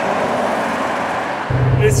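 Bentley Mulsanne Speed driving past on a road, heard from the roadside as an even rush of tyre and road noise with no clear engine note. About one and a half seconds in, the sound changes to the inside of the car's cabin: a low drone of road noise, and a man starting to speak.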